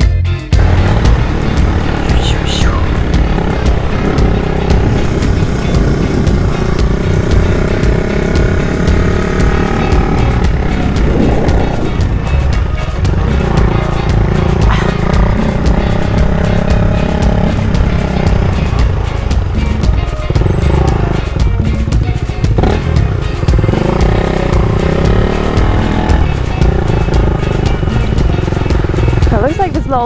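A motorcycle running along at road speed, with wind noise on the microphone, under background music with a singing voice.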